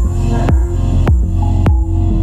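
Deep, melodic techno from a DJ mix: a steady kick drum about every 0.6 s over a sustained, throbbing deep bass and held synth tones.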